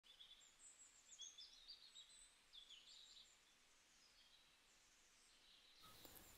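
Near silence, with faint, high bird chirps in the first three seconds or so.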